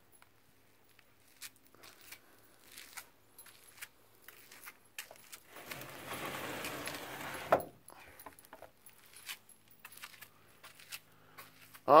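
Steel filing-cabinet drawer sliding shut on its metal runners for about two seconds, ending in a sharp clunk, among scattered light metallic clicks and rattles.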